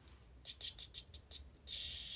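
A makeup brush swirled in a pressed highlighting-powder pan: a quick run of short, soft scratchy strokes, then one longer swish near the end.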